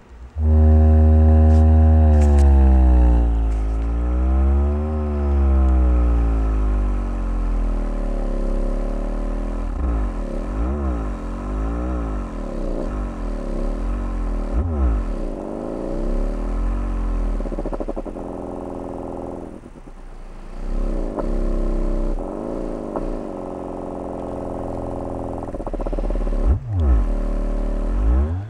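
Sundown Audio X-6.5SW prototype 6.5-inch subwoofer driver playing loud low bass in free air, with no enclosure, its cone moving through long excursions. The bass notes slide up and down in pitch with a buzzy edge of overtones. The sound starts abruptly and dips briefly about two-thirds through.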